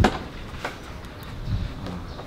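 Fiat 500's fabric roll-back roof being opened by hand: one sharp click at the start as the roof is unlatched, then a few softer knocks as the canvas is pushed back.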